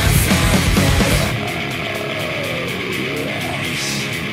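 Heavy rock music playing loud. About a second in, the drums and bass drop away, leaving a thinner, quieter passage.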